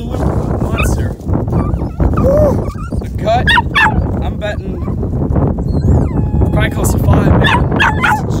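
A dog whining in short high cries that rise and fall, a cluster of them a few seconds in and more near the end, over a low wind rumble on the microphone.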